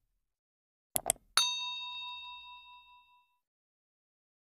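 Two quick mouse-click sound effects, then a single bright bell ding that rings out and fades over about two seconds: the click-and-bell sound effects of a YouTube subscribe-button animation.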